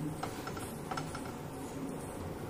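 A few light taps and clicks as a hand presses and pats a groundnut poli cooking on a hot tawa, over a steady low background noise.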